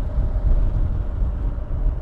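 Wind buffeting the microphone over the steady low rumble of a Kawasaki KLR650's single-cylinder engine, cruising at a constant speed.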